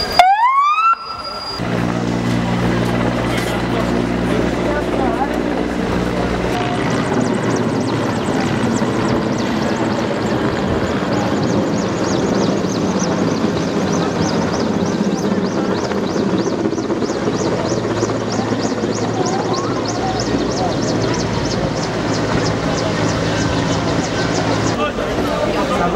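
Firefighting helicopter flying overhead with a steady engine and rotor hum and faint regular beating, under voices of onlookers. A short rising whoop sounds at the very start.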